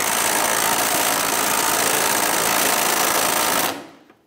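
Power ratchet running a fuel tank strap bolt in through a socket extension and swivel, a fast, even buzz that cuts off shortly before the end.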